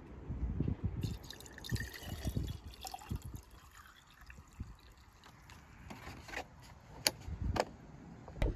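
Water trickling and sloshing in a glass jar as it is filled. Near the end come two sharp clicks, about half a second apart.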